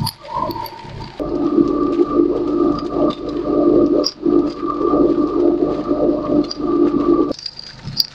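Small concrete mixer running, its drum tumbling a wet sand-and-cement mix as water is tipped in from a bucket at the start. About a second in, a loud, steady motor hum comes up, holding until shortly before the end.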